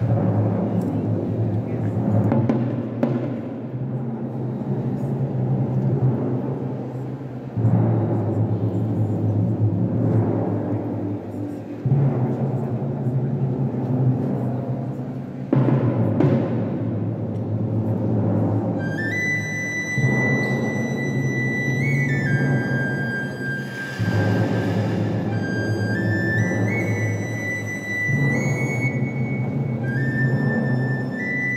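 A procession band plays a slow funeral march. Low brass holds sustained chords, with a drum stroke opening each phrase about every four seconds. About two-thirds of the way through, a high melody line enters over the chords.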